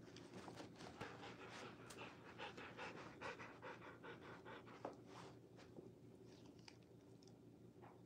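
A Rottweiler panting faintly: quick, even breaths about four to five a second, thinning out about five seconds in.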